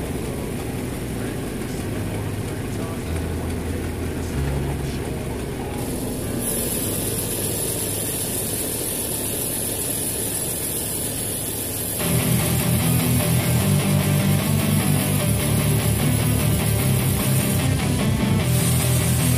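A portable band sawmill running under background music, with a high hiss joining about six seconds in. About twelve seconds in, louder rock music with electric guitar takes over.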